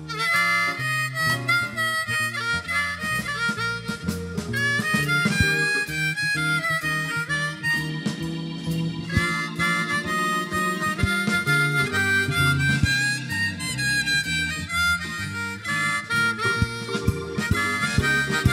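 Blues harmonica solo, played with the harmonica cupped against a handheld microphone, with many bent notes over a live band's electric bass line.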